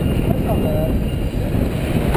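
Steady, loud rush of wind buffeting the microphone and water streaming along the hull of a sailboat heeled over under sail.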